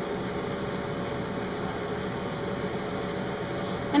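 Steady room hum and hiss, even throughout with no distinct events, like a fan or air-conditioning unit running in the background.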